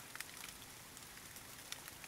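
Faint steady rain, with scattered ticks of individual drops.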